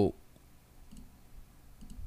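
Faint computer mouse clicks, one about a second in and another near the end, as layer visibility is switched off.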